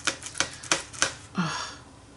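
A paint sponge dabbing on a paper journal page: a quick run of light taps through the first second, followed by a short hummed 'mm' of voice.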